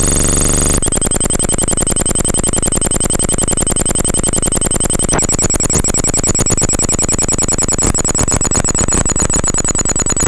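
Harsh electronic noise from a homemade effects pedal: a rapid, alarm-like buzzing pulse with a steady high whine over it. It changes character abruptly about a second in and again about halfway through as the pedal's knobs are turned.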